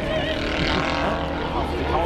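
Piston engine of a propeller plane droning steadily as it flies past, swelling a little in the middle, with voices in the background.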